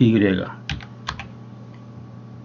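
Two computer keyboard key presses, about half a second apart: the S and Y shortcut keys that start a scale along the Y axis in Blender.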